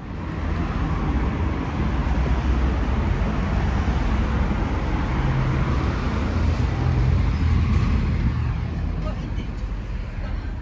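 Steady, loud rumble of road traffic noise out in the street.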